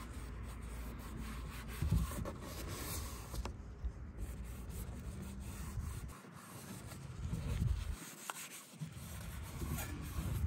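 Soft rubbing and handling noises from a gloved hand working close to the microphone, with a dull thump about two seconds in and another near eight seconds.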